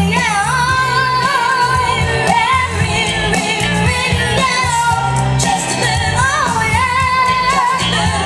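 A young girl singing a soul-pop song live through a PA with band accompaniment and a steady bass line, holding long notes with vibrato.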